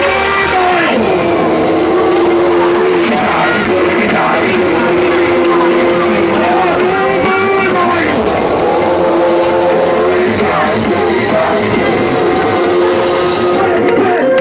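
Loud live music over a concert PA, with long held melodic notes and a voice on the microphone.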